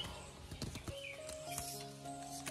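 Soft background music with long held notes, with a few light knocks of limes being picked up and set down as they are counted.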